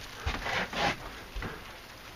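Short rustling and scraping swishes: several quick ones close together in the first second and one more about halfway through. This is handling noise as the camera is moved.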